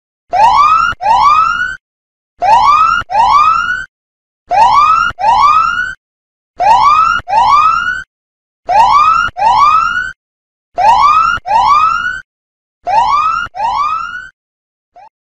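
Countdown timer's time-up alarm sound effect: an electronic whoop rising in pitch, sounded twice in quick succession. The pair repeats about every two seconds, seven times.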